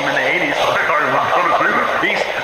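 Garbled, radio-like voice transmission: distorted speech that cannot be made out.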